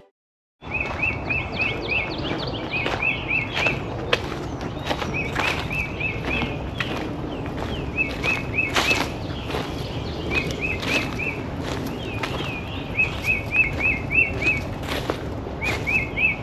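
After a moment of silence, outdoor ambience with a songbird singing a short phrase of four or five quick notes, repeated every second or two. Scattered short crunches and clicks of footsteps on dry ground run underneath.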